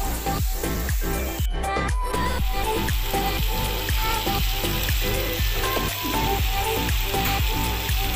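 Chicken kebab skewers sizzling and frying in a hot nonstick grill pan: a steady, even sizzle, with background music that has a steady beat.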